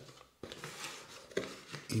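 Quiet handling of a product box and its inner packaging tray on a desk, with two soft knocks: one about half a second in and another about a second later.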